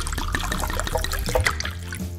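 Pickle juice poured from a glass jar into a plastic blender jar, trickling and splashing steadily onto the spinach inside.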